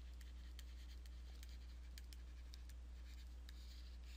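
Faint ticks and light scratching of a stylus writing on a tablet screen, over a steady low electrical hum.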